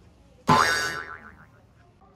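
A cartoon-style comic sound effect added in editing. It comes in suddenly about half a second in, wobbles in pitch and fades out within about a second, marking a letdown.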